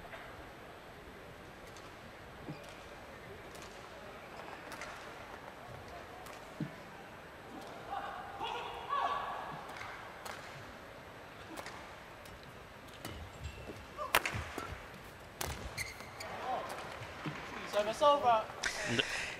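Quiet indoor-arena ambience with a faint crowd murmur. From about 14 s a short badminton rally begins: several sharp racket strikes on the shuttlecock, the first the loudest, followed by busier court sounds as the point ends.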